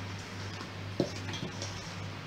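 Spoon or spatula folding flour into a creamed cake batter in a stainless-steel bowl: faint scraping with a single knock against the bowl about a second in, over a steady low hum.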